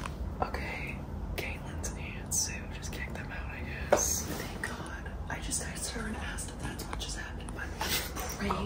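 Hushed whispering from people lying in bed, with short rustles and clicks of bedding and handling over a steady low hum.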